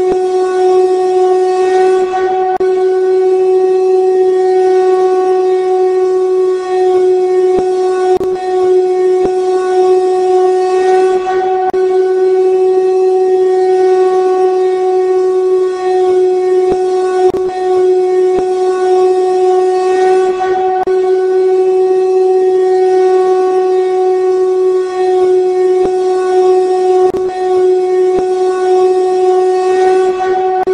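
A loud, steady drone held on one pitch with overtones above it, over an even hiss, with faint clicks now and then.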